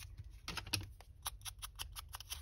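Quick, irregular little clicks and taps of hands handling a small paper label and ink-blending supplies on a craft mat, just before inking the label's white edges.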